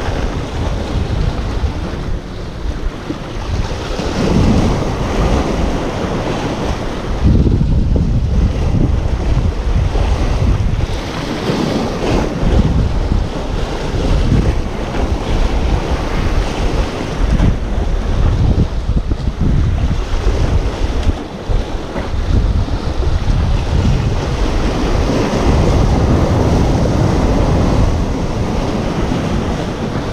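Wind buffeting the microphone over small sea waves washing and splashing against the rocks at the water's edge, the noise rising and falling with each gust and surge.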